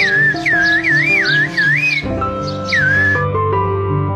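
A man whistling Turkish whistled language (kuş dili, "bird language"), sending a reply that means "Okay, okay! I'll bring one!". It is a string of loud, wavering whistles that glide up and down for about two seconds, then one falling whistle a little later. Background music with steady held notes plays underneath.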